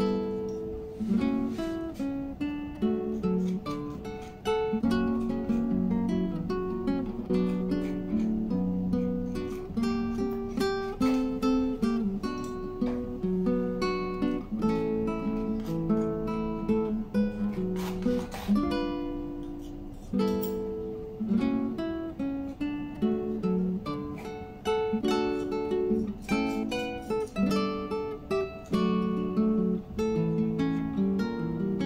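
Background music of acoustic guitar: a steady run of plucked and strummed notes, each ringing out briefly.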